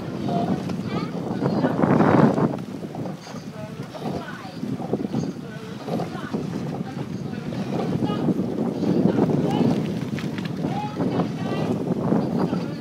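Wind buffeting the microphone in uneven gusts, loudest about two seconds in, with faint, indistinct shouting voices in the background.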